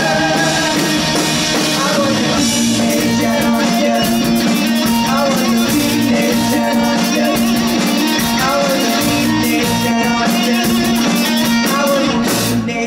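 Live rock band playing loudly: distorted electric guitars, bass and drum kit, with a singer's voice over them. The cymbals and drums get busier about three seconds in.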